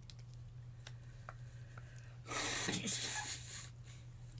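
A person blowing their nose hard into a tissue: one loud, rushing blow of about a second and a half, starting about two seconds in.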